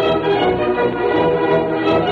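Orchestral music playing steadily: the radio program's closing music.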